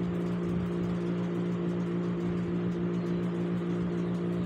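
A steady low mechanical hum with a constant tone and faintly pulsing overtones above it, unchanging throughout.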